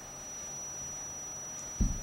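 Quiet meeting-room tone with a thin, steady high-pitched electronic whine, and one short low thump near the end.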